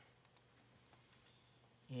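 Near silence: faint room tone with a few soft, short clicks from the computer being worked, a mouse and keyboard.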